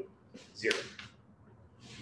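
A man speaks one short word, "zero", followed by a quiet pause with only faint room sound.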